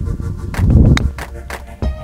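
Background music with a steady beat. About a second in, one crisp click: a chipping club striking a golf ball off the turf.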